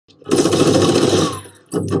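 Automatic gunfire in bursts: a long burst of about a second, then a second burst starting near the end.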